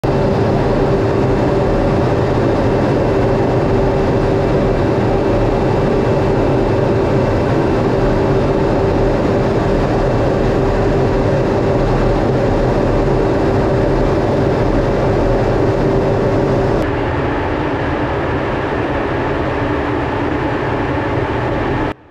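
Steady, loud rumble and rush of an F/A-18 Hornet heard from inside the cockpit in flight, engine and airflow noise with a steady mid-pitched hum. About three-quarters of the way through it changes abruptly to a slightly quieter, duller rumble without the hum.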